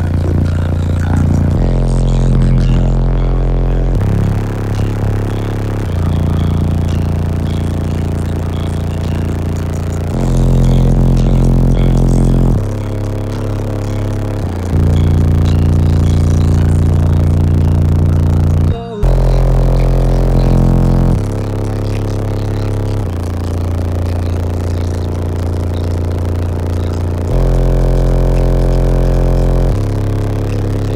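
Three 18-inch Resilient Sounds Platinum subwoofers in a ported, walled-in box, heard from inside the small car's cabin, playing a song loud with long, deep bass notes that step to a new pitch every few seconds. The sound cuts out for a moment near the middle.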